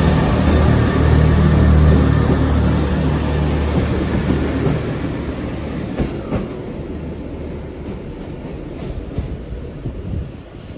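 Class 158 diesel multiple unit pulling away, its diesel engines running under power with a steady low hum that fades as the train moves off. A few sharp clicks come through in the second half.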